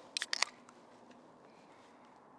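A beer can being cracked open: a quick cluster of sharp metallic clicks from the pull tab, over in under half a second.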